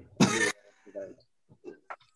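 A man laughs in one short, breathy burst, followed by a few soft chuckles.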